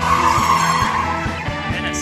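Car tyres squealing as a sedan slides sideways in a drift, the squeal strongest in the first second and then fading, over rock music with a steady beat.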